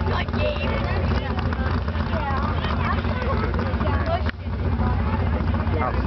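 Lawn tractor engine running steadily at idle, with people talking over it; the sound dips briefly about four seconds in.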